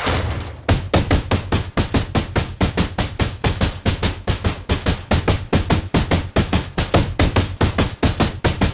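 A brief rolling rush as a truck's roll-up rear door is pulled shut, then a fast, unbroken run of open-hand slaps on the back of the truck box, several a second. The slaps are the signal that the truck is loaded and ready to go.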